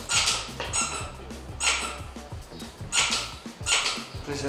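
Squeaky dog toy squeezed again and again, about five short, high-pitched squeaks spaced unevenly, used as a sound test of an old dog's hearing.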